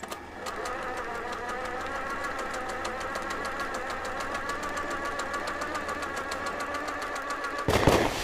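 A motor running steadily with a rapid, even ticking over a wavering hum, broken by a loud thump near the end.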